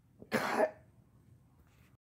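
A man clearing his throat once with a short, raspy grunt, about a third of a second in.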